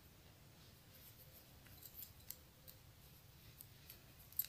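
Faint, scattered light clicks of metal knitting needles tapping together as stitches are purled, over near silence.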